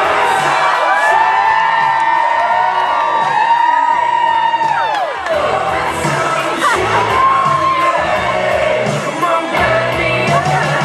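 Recorded music playing over a club's sound system with a steady beat, while the audience cheers and lets out long whoops over it, most of them in the first half.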